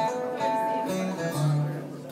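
Steel-string acoustic guitar played solo, a few strummed chords with their notes left ringing.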